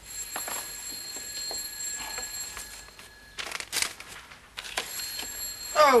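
An old-style telephone bell ringing in two long rings with a short pause between them. There is a brief rustle in the pause.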